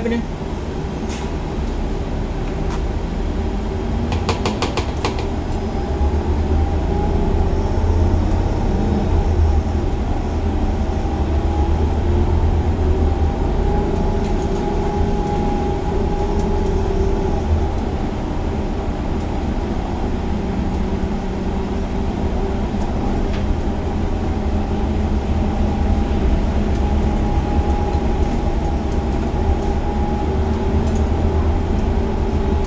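Gillig Advantage low-floor transit bus's engine and drivetrain heard from the driver's seat while driving in traffic: a steady low rumble with a faint whine that drifts in pitch with road speed. A brief run of rapid clicks about four seconds in.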